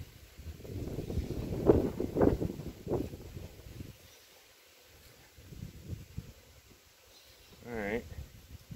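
Irregular low bumping and rustling as frames in an open beehive are worked with a hive tool, mixed with wind on the microphone. It is loudest in the first three seconds and quieter in the middle. A short pitched sound comes just before the end.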